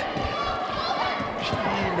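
Gymnasium ambience during a volleyball rally: crowd noise with scattered thumps of players' feet and bodies on the hardwood court. A commentator's voice comes in near the end.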